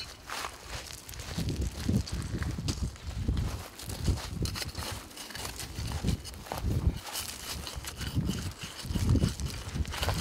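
Footsteps and shuffling on a pebble and shell beach, with gusts of wind rumbling on the microphone.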